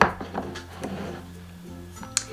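Background music with steady held notes, under a sharp click at the start and a few softer knocks from handling a plastic tub of aloe vera gel.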